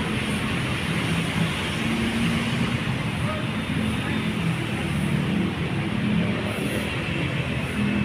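Steady vehicle noise at a bus terminal: a low rumble of idling diesel buses with faint voices in the background.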